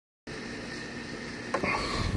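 Faint steady background noise, then a click and a short stretch of metal rubbing about one and a half seconds in, as a lug nut is turned by hand on a trailer wheel stud.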